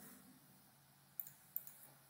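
Two faint clicks of a computer mouse, a little under half a second apart, about a second in, over near silence with a faint low hum.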